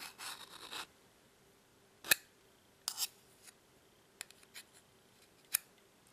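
Hand deburring tool's swivel blade scraping along the laser-cut edge of an aluminum panel for under a second, shaving off the burr and slag. A few sharp clicks follow, scattered over the next few seconds.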